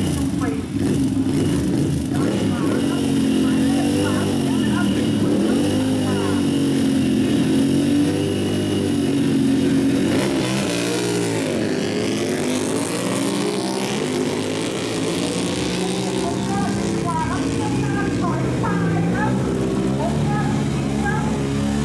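Ducati Monster's L-twin engine revving on and off the throttle, its pitch wavering up and down the whole time, with a sweeping fall and rise in pitch about ten seconds in. Voices can be heard in the background.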